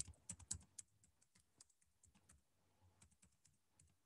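Faint computer keyboard typing: a run of separate keystrokes, a little louder in the first second.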